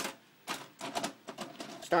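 A sharp click, then a string of lighter, irregular clicks and taps from a VHS cassette and VCR being handled.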